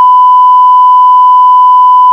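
A loud, steady test-pattern tone: a single unwavering beep at one pitch, the kind played under television colour bars.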